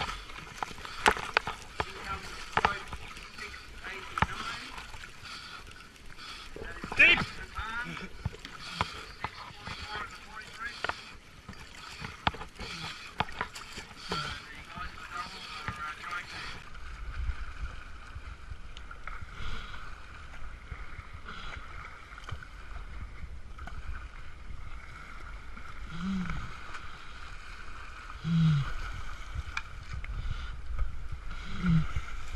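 Whitewater churning and splashing around a capsized kayak in a weir chute, with many sharp knocks and splashes against the hull. After a cut about 17 s in, a steadier rush of river water as the kayak is paddled down a narrow tree-lined channel.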